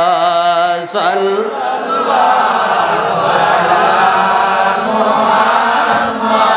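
Islamic devotional chanting (salawat) through a PA microphone: a man's voice holds a long, wavering sung note that breaks off just before a second in. From about two seconds in, a fuller chorus of voices chants together.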